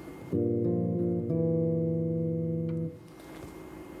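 Squier Classic Vibe '60s electric bass playing chords from a well-known rock song: a chord plucked about a third of a second in, a second chord about a second later that rings out, then stopped short near the three-second mark.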